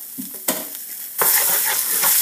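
Tomato paste frying in hot oil in a nonstick pan as a wooden spoon stirs it, with a single knock about halfway in. A little past halfway the sizzling jumps to a loud, steady hiss as the paste is spread through the oil.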